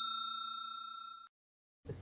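Ringing tail of a bell chime sound effect from a subscribe-button animation: a steady bright tone slowly fading, cut off abruptly a little past halfway.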